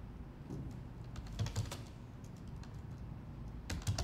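Faint, irregular clicking and tapping over a low, steady background hum.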